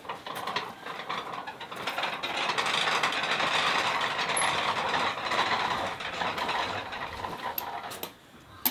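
A row of metal prayer wheels spun by hand one after another, rattling and grinding on their spindles as they turn. The rattling builds about a second and a half in, is loudest through the middle, and eases off near the end.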